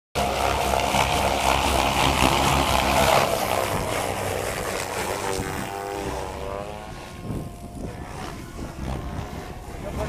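Radio-controlled SAB Goblin 700 and Goblin 380 helicopters flying, their main rotors and motors making a loud, steady blade noise. It is loudest for the first three seconds and then fades as they fly farther off.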